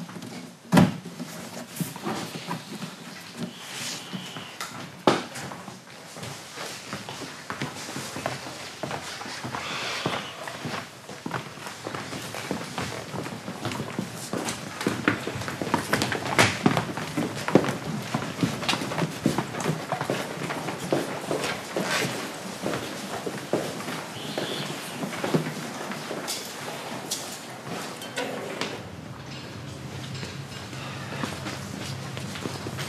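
Storage boxes being handled and stacked, with a few sharp knocks in the first five seconds, then a long run of footsteps and small knocks as the boxes are carried.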